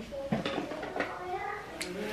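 A quiet voice in the background, with a few light clicks of small objects being handled.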